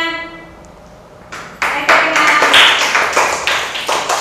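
A held sung note fades away at the start. After a short pause, a group starts clapping hands about a second and a half in, in quick, irregular claps that continue.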